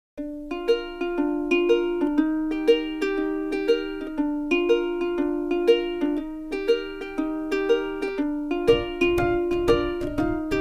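Background music: a light, plucked-string tune with evenly spaced notes, about two a second. A low beat joins near the end.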